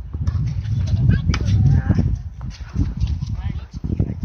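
Indistinct talking from people close to the microphone.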